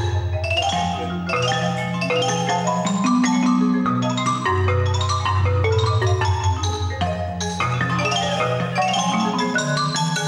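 Mallet-percussion ensemble of marimba and xylophone-type keyboard instruments playing a fast melodic passage of many quick struck notes. Low marimba notes underneath are sustained with rolls.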